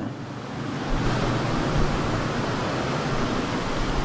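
A steady rushing hiss, like static, that swells about a second in and cuts off suddenly at the end.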